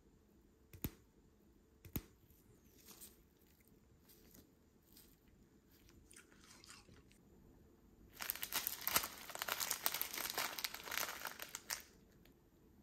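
Two small clicks and faint scattered crackles, then about four seconds of loud, dense crinkling from a small plastic snack packet being handled.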